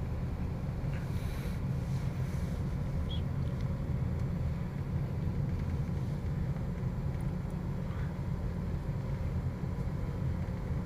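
Car engine and tyre noise heard from inside the cabin while the car drives slowly: a steady low rumble.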